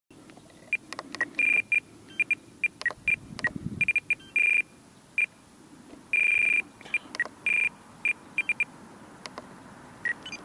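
Electronic beeping from a small device: an irregular run of short beeps and a few longer ones at two high pitches, mixed with small clicks like buttons being pressed.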